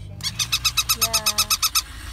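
A rapid, even run of about fifteen sharp ticks, some ten a second, in a car cabin, stopping just before the end.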